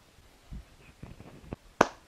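Quiet room tone with a few soft, low thumps and one sharp click near the end.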